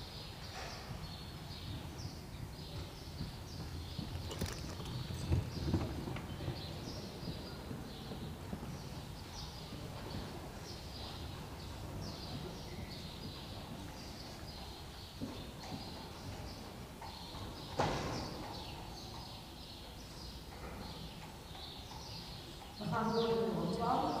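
Hoofbeats of a Friesian horse in harness on the arena's sand footing, with the low rumble of a four-wheeled driving carriage rolling behind. A few sharper knocks sound, the clearest about eighteen seconds in.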